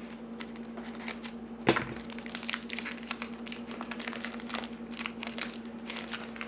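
Foil wrapper of a Panini Prizm trading-card pack crinkling and crackling as it is handled and pulled open, with a sharper snap about two seconds in.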